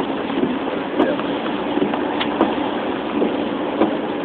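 Steady road noise inside a moving car on a rain-soaked street: tyre hiss on the wet road with a low, even engine hum.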